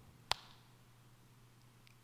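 A single short, sharp click about a third of a second in; otherwise near silence with a faint, steady low hum.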